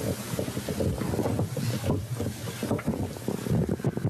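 Rustling, rumbling noise on an open microphone, like wind or handling noise, with no clear words.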